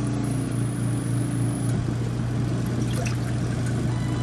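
Superday portable twin-tub washing machine running its wash cycle: a steady motor hum with water sloshing as the tub churns a load of towels.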